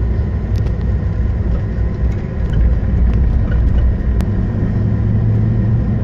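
Car driving slowly along a paved road, heard from the vehicle: a steady low rumble of engine and tyre noise.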